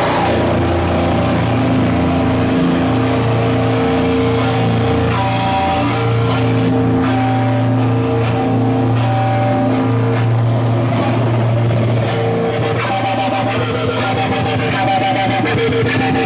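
Loud, distorted amplified guitars playing live, holding long droning notes that shift pitch every second or two with little drumming. Near the end the sound gets busier.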